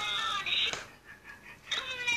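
A person's high-pitched voice, wavering in pitch, trailing off well before the middle; a brief lull follows, then faint voice sounds near the end.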